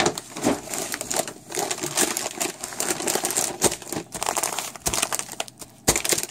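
Plastic food bags (oat, pasta and bean packages) crinkling and rustling as they are handled and shifted, a dense irregular run of crackles with a few louder crinkles.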